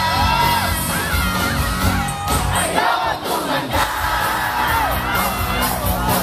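Live rock band playing with a large crowd singing and shouting along. The band's low end drops away briefly about halfway through while the voices carry on.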